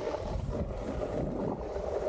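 Snowboard sliding and scraping over packed, groomed snow, with wind rushing over the action camera's microphone as a steady low rumble.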